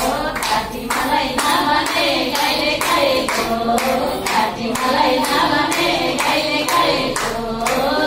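Women singing a Nepali teej folk song, a lead voice on a microphone with others singing along, over steady hand-clapping at about two claps a second.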